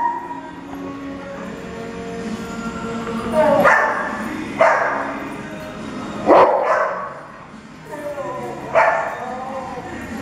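Dogs barking while play-fighting: four loud, sharp barks a second or two apart, starting about a third of the way in.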